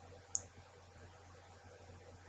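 A single computer mouse click about a third of a second in, over a faint steady low hum.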